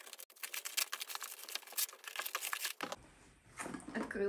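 Scissors snipping and plastic wrap and packing tape crinkling as a parcel is cut open. The sound is a dense, fast run of clicks and crackles, fast-forwarded, that stops abruptly about three seconds in.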